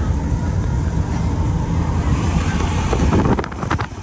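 Steady engine and road rumble heard inside a moving camper van's cabin, with a few short clicks shortly before the end.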